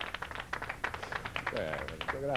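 A small audience applauding: quick, scattered hand claps that thin out about one and a half seconds in, as a voice starts.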